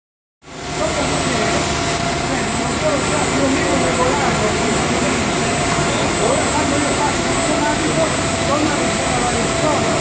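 Running seven-layer pilot blown film extrusion line: a steady loud machine hum and whir of extruder drives and cooling blowers, with a high steady whine. Indistinct voices sound faintly beneath it.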